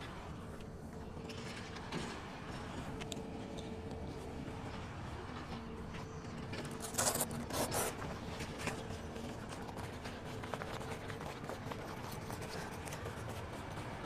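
A zipper on a canvas tent panel pulled in a few short strokes about seven seconds in, over low steady background noise with a faint hum.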